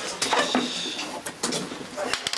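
Light knocks and clatter of a plastic portable CD/cassette boombox being handled and turned over, a few sharp clicks among them.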